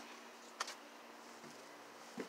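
Faint steady low hum, with one short sharp click just over half a second in.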